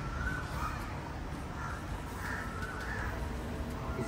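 Several bird calls over a steady low background rumble.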